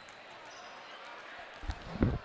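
Basketballs bouncing on a hardwood gym floor during warm-ups over the steady hubbub of a gym crowd, with a few loud thumps near the end.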